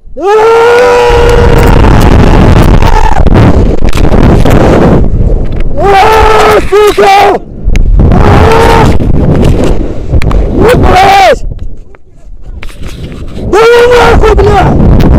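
A man screaming as he drops on a rope jump: one long held scream, then several shorter yells as he swings. Heavy wind buffets the head-mounted microphone throughout.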